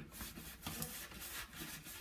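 A paper card being pushed through a door letterbox, scraping against the brush bristles of its draught excluder in an irregular scratchy rustle.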